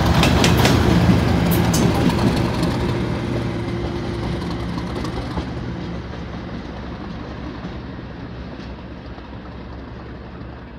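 Class 37 diesel locomotive 37402 running on its own, its English Electric V12 diesel engine loud as it passes close by, with wheels clicking over rail joints in the first two seconds. The engine sound then fades steadily as the locomotive draws away.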